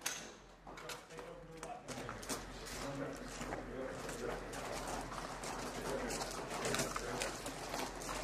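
Several people's boots crunching on gravel in quick, irregular steps as they move in a group, with a sharp click at the very start and faint low voices.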